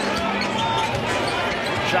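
A basketball being dribbled on a hardwood arena court during a post-up back-down, over the steady noise of the arena crowd.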